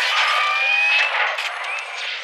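Sound effect for an animated logo intro: a dense, thin metallic swell with sharp clinks and a few short rising tones, loudest about a second in and then fading away.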